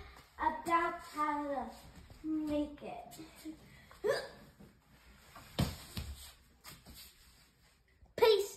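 A young girl's wordless vocal sounds, short pitched cries and hiccup-like exclamations that glide up and down, during the first half. About five and a half seconds in comes a single heavy thump with a couple of lighter knocks after it, a body landing on the foam floor mat off the fabric aerial swing.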